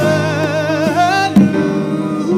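A woman singing a solo into a microphone, holding one note with a wide vibrato for over a second before breaking off, over a steady instrumental accompaniment. A sharp tap comes about a second and a half in.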